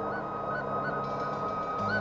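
Film background music: held notes with small quick upturns at the ends, over a steady low drone.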